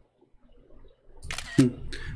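Near silence for about a second, then a short noise and a man's "hmm" near the end.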